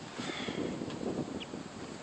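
Steady wind noise on the microphone, a low, even rushing hiss, with a faint click partway through.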